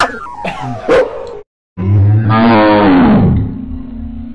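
A person's voice warped by a voice-changing effect, giving short sliding cries, then, after a brief total dropout, one long call that falls in pitch. A steady low tone holds on near the end.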